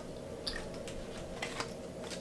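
Bubblegum being chewed with the mouth open, close to the microphone, giving a few wet smacking clicks: one about half a second in and a couple around a second and a half in.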